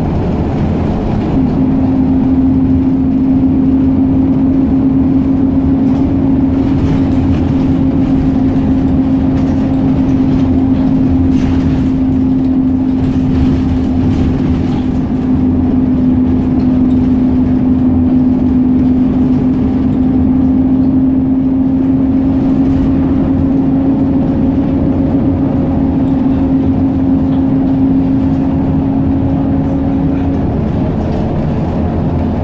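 Inside a moving bus: steady engine and road rumble, with a steady whine that joins it about a second and a half in.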